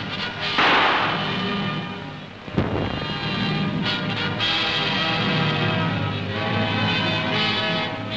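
Film score music with held notes, cut by a sudden loud blast about half a second in as the harpoon gun fires, fading over about a second; a second sharp hit follows about two and a half seconds in.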